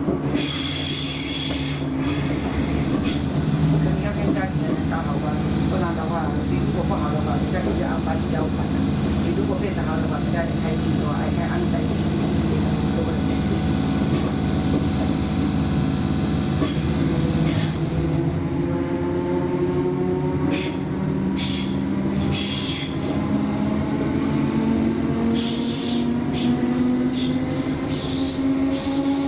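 Class 317 electric multiple unit heard from inside the carriage, running with a steady hum. From about two-thirds of the way in, a whine rises steadily in pitch as the train picks up speed. Passengers' voices murmur through the first half.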